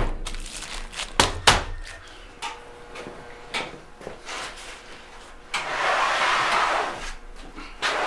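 Plastic bag rustling, with a few sharp knocks, as it is folded around a block of clay; a little past the middle comes about a second and a half of steady noise whose source is out of sight.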